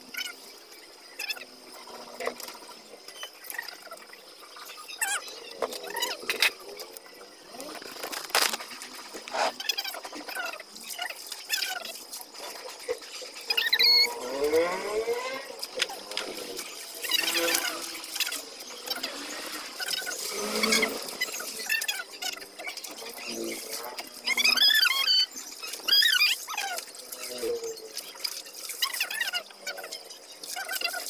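Laundry being washed by hand: wet clothes scrubbed and handled in water, with irregular squeaks, rubbing and splashes.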